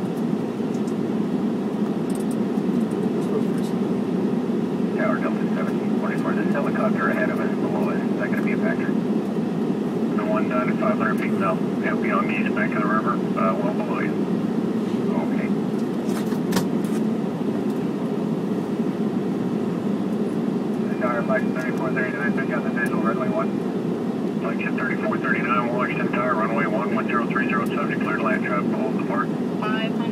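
Steady low rush of cockpit noise in a Boeing 717 on final approach with its landing gear down: airflow and engine sound. Four stretches of radio voice chatter come and go over it.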